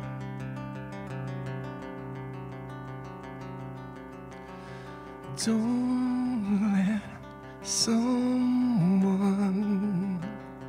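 Live acoustic song: a steel-string acoustic guitar picked on its own for about five seconds, then a man's voice comes in singing long held notes over it, twice.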